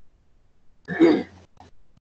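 A man clears his throat once, briefly, about a second in.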